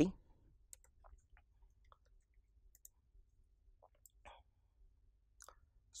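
Faint, irregular clicks of a computer being operated, a scattering of single clicks spread across several seconds, over a low steady hum.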